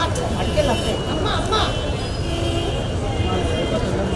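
Indistinct murmur of several voices talking at once over a steady low rumble.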